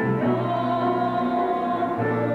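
Slow gospel song performed live by a singer and band, with long held notes over a sustained chord and steady bass; the chord changes just after the start and again at the end.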